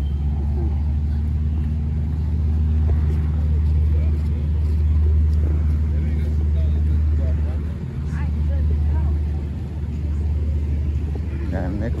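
A steady low engine hum runs throughout, with faint voices of people in the background.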